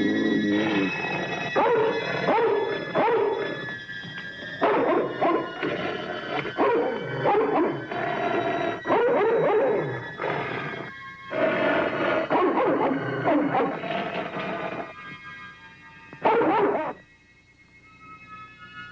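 A dog growling and barking in a run of loud, irregular bursts over sustained high electronic music tones, with a last short burst near the end.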